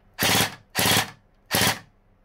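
Electric LeHui Sig552 gel blaster firing three short full-auto bursts, each about a third of a second long with a rapid rattle of gearbox cycles. Two gels are jammed side by side inside the blaster.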